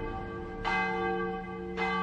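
Church bell tolling: two strokes about a second apart, each one ringing on into the next.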